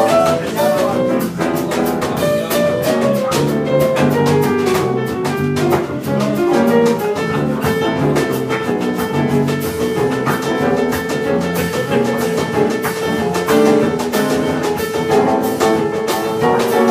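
Live jazz band playing: grand piano, electric bass guitar and drum kit, with a steady rhythm of drum strokes running under the chords and bass line.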